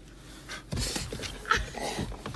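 A dog panting quickly, with a sharp tap on the car window about one and a half seconds in.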